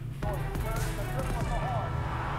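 Basketball game sounds played from a Michael Jordan highlight reel: a ball bouncing on a hardwood court, with high squeaks, starting about a quarter second in.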